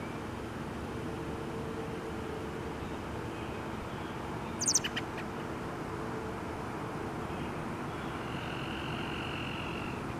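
A bird gives a quick burst of high chirps about halfway through, over a steady low outdoor rumble. A faint high drone comes in near the end.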